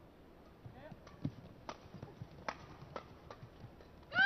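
Badminton rally: a string of sharp, crisp racket strikes on a shuttlecock, five or six hits at irregular intervals of roughly half a second, over faint arena background.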